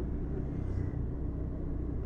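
Steady low rumble of street background with no distinct events.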